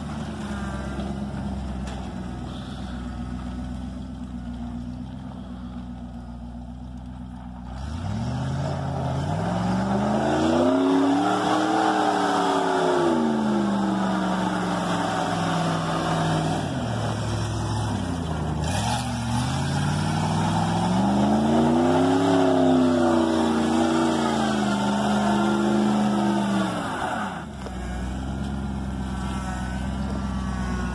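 Engine of a homemade stripped-down truck on oversized tires, running fairly low at first, then louder from about eight seconds in as it is revved up and eased off twice in long rising and falling sweeps, dropping back near the end.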